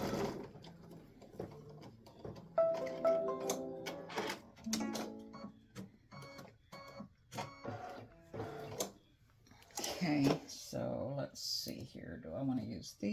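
A computerised embroidery machine stops stitching at the very start. It is followed by a couple of short electronic tones and a scatter of plastic clicks and rattles as the embroidery hoop and fabric are handled.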